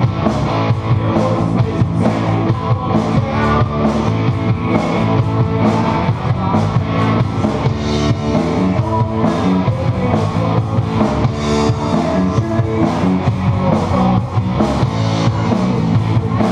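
Live rock band playing electric guitars and a drum kit in a steady, loud instrumental passage without singing.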